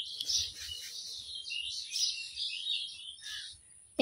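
Small birds chirping busily, many short overlapping chirps with no pause.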